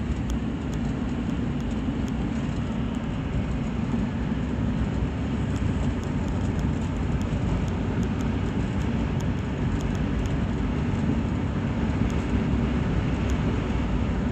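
Steady engine and road rumble heard inside the cabin of a Ford Explorer SUV cruising at about 45 mph.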